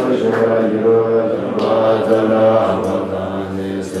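Tibetan Buddhist monks chanting a mantra together, the same short phrase recited over and over in a steady, even rhythm without a break.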